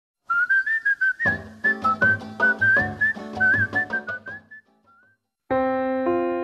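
A short whistled melody with small slides between notes over a light, steady beat and bass line, fading out after about four and a half seconds. Near the end a sustained keyboard chord comes in.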